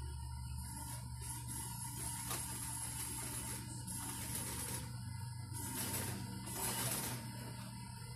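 Table-mounted industrial sewing machine stitching in short runs over a steady motor hum, its mechanism rattling loudest a little past the middle.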